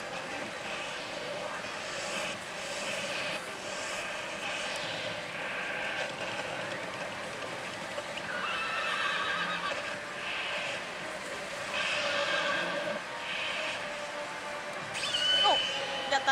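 Pachislot parlour din: slot machines' electronic sound effects over a steady wash of hall noise, with brighter bursts of effects coming and going every second or two.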